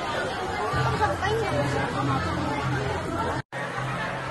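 Indistinct chatter of several voices, with a low steady hum underneath from about a second in. The sound cuts out completely for a moment about three and a half seconds in.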